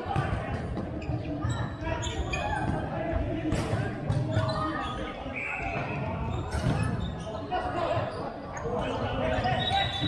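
Futsal game on a wooden hall floor: the ball knocking and bouncing off the boards and players' feet, over players shouting and calling, all echoing in a large sports hall.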